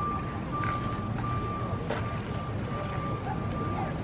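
Outdoor background noise, a steady low rumble, with a faint thin high-pitched whine that breaks off and returns several times, and a couple of light clicks in the first two seconds.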